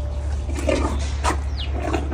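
Asian elephant feeding on chopped pumpkin: a few short noises from the animal and its food in the second half, including one sharp click and a brief falling squeak, over a steady low hum.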